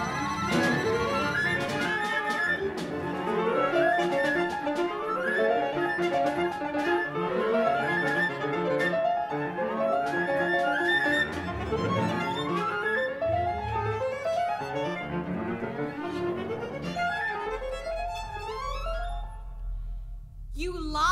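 Chamber orchestra of bowed strings, piano and winds playing contemporary classical music without voice: busy, repeated rising figures in the strings over cello and piano. The texture thins out near the end.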